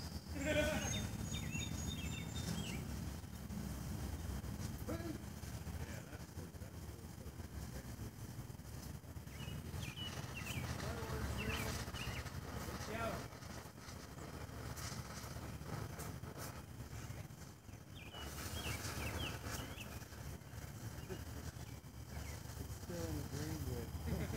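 Faint, indistinct voices over a steady low outdoor rumble; no blast from the shell.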